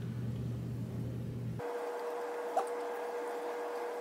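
Quiet room tone with a low steady electrical hum. About one and a half seconds in, the hum cuts out abruptly and a faint, steady, higher hum continues.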